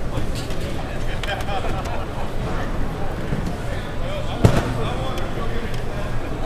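Background chatter of people talking in a busy exhibition hall, with one sharp knock about four and a half seconds in.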